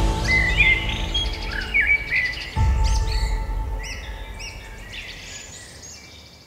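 Birds chirping in many short rising-and-falling calls, over music with held chords that changes chord about halfway through and fades out toward the end.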